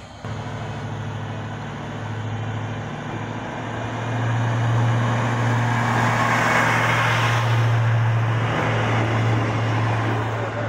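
Arriva SA106 diesel multiple unit running past at close range: a steady diesel engine drone throughout, growing louder from about four seconds in, with a swell of wheel and rail noise as the cars go by around six to eight seconds in.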